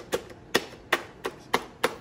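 Roborock E4 robot vacuum's front bumper pressed in by hand and springing back, about three sharp plastic clicks a second. The bumper still moves freely with the cliff sensors taped over.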